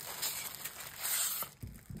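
Clear plastic wrapping and a polystyrene packing piece rustling and crinkling as they are pulled off an incense holder.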